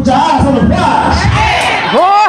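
A man shouting through a microphone and PA system, his voice rising and falling in long strained arcs, with congregation voices behind him.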